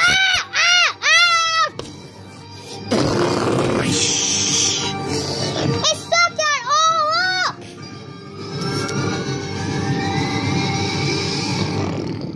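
Monster screeches in two bursts of high, rising-and-falling cries, a few seconds apart, with a noisy rushing blast between them. Background music runs underneath.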